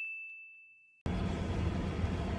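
A single high electronic ding from an animated logo sting, held as one steady tone and fading away. About a second in it cuts off abruptly to the steady rumble and hiss of a car interior while driving.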